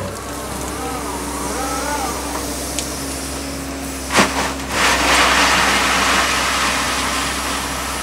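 Excavator running with its engine humming steadily and a wavering hydraulic whine as the engcon tiltrotator works the bucket. A single sharp knock comes about four seconds in, then a louder rushing noise over the last three seconds.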